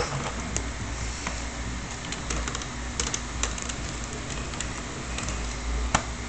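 Scattered light clicks and taps of small plastic parts as a toddler handles a plastic shape-sorter toy with telephone-style buttons, over a low rumble of handling noise.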